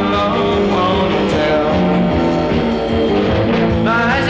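A rock and roll record playing: a full band with guitar over a steady beat.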